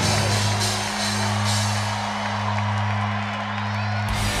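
A rock band's last note held and ringing out low and steady, with a stadium crowd cheering.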